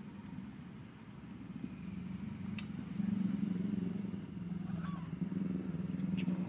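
A motor engine running with a steady low hum that grows louder about three seconds in, with a few faint clicks over it.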